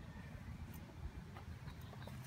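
Faint outdoor background noise: a low, uneven rumble with a light hiss and no clear engine note.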